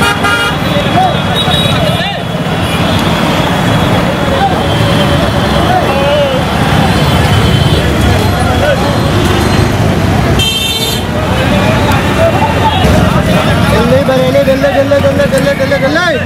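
Busy bus-station traffic: engines running and people's voices in the background, with a brief vehicle horn toot about ten and a half seconds in.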